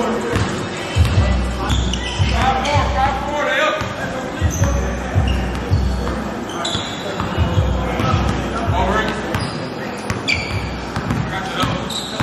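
Basketball dribbled on a gym floor, a steady run of bounces, with short sneaker squeaks and players' voices around it.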